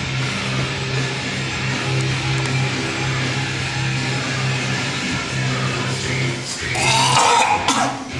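Guitar music playing steadily. About seven seconds in comes one loud, harsh retch lasting about a second, from a lifter heaving over a bin, sick with exhaustion after heavy squats.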